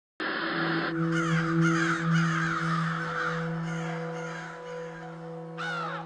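Crow cawing several times in harsh, falling calls over a low sustained synth chord, with one last caw near the end.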